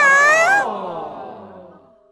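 A short high-pitched cry that rises in pitch about half a second in, then fades away gradually over the next second and a half.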